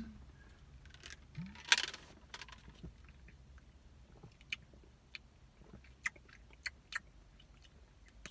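A person swallowing a mouthful of protein shake, then quiet lip smacks and mouth clicks while tasting it, as short scattered clicks through the rest.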